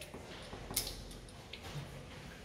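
A few faint, short clicks, the loudest about three-quarters of a second in, as a glass test tube is handled at the lab bench.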